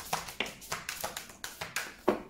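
A deck of oracle cards being shuffled by hand, the cards tapping and slapping against each other in a quick, irregular run of sharp clicks.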